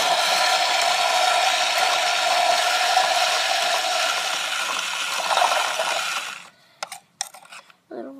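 Toy toilet's battery-powered flush running: a small motor whirs steadily as it swirls the water in the bowl, then cuts off abruptly about six and a half seconds in, followed by a few light clicks.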